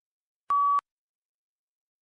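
A single short electronic beep, one steady pitch lasting about a third of a second: the exam software's tone signalling that recording of the spoken answer has begun.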